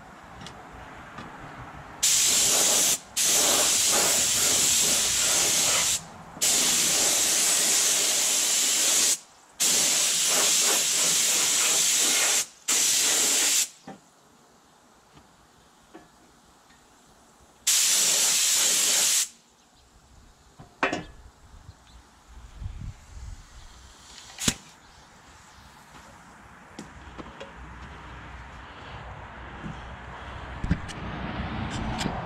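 Paint being sprayed in six hissing bursts over the first two-thirds, each starting and stopping sharply and lasting from about one to three seconds. A few faint clicks follow, one of them sharp.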